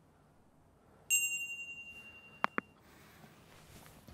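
Notification-bell ding from a subscribe-button animation about a second in, ringing out over about a second, then a quick double mouse click a little after two seconds.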